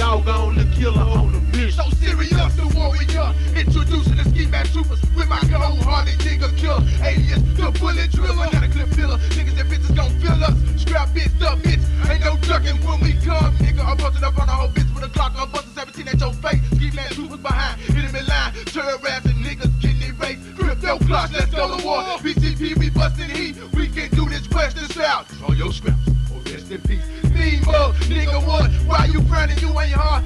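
Memphis rap track played from a 1997 cassette tape, a hip hop beat with a deep, sustained bass. About halfway through, the bass breaks into choppy stop-start hits, and it comes back steady near the end.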